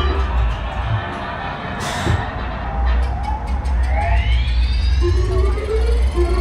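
Ride soundtrack music over the low rumble of the coaster train, with a rising, siren-like swoop in pitch from about three to five seconds in.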